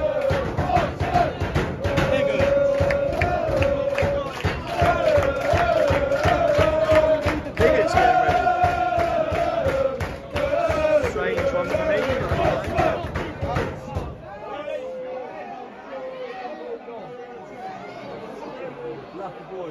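A football crowd singing a chant in unison, with sharp beats throughout. About fourteen seconds in it cuts off abruptly to quieter crowd noise and chatter.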